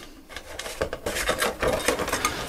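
A sheet of thin wood scraping and rubbing on a scroll saw's metal table as it is handled and fed onto the removed blade, with small ticks and rustles. It starts softly and becomes a steady, irregular scratching about a third of a second in.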